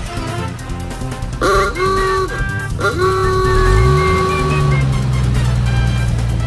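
A horn honks twice, a short blast about one and a half seconds in and a longer held one about a second later. Then a low engine note rises and holds steady as the vehicle drives off, with music underneath.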